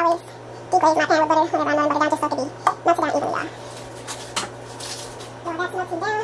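A high-pitched voice talking in short bursts, with a few light clicks of a knife against a pan.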